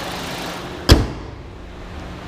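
The hood of a 2012 Chevy Cruze slammed shut once, about a second in, over the steady sound of its idling 1.8 litre non-turbo Ecotec four-cylinder engine. Once the hood is down, the engine sounds duller and quieter.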